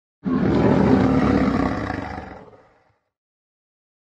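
A lion's roar sound effect, starting sharply and fading away over about two and a half seconds.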